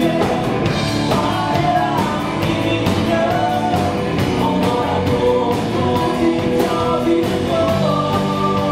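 Live rock band playing: a male lead vocal sung over electric guitar, bass guitar and a drum kit keeping a steady beat.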